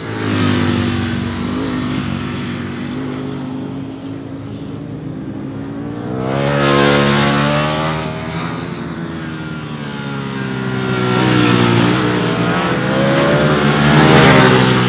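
Ducati Panigale V4 sport bike's V4 engine revving hard, its pitch climbing and dropping repeatedly through the gears. It swells louder about halfway through and again near the end.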